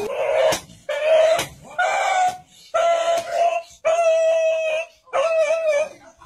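A dog crying out in distress: six loud wailing cries in a row, each held at one steady pitch, the later ones lasting about a second.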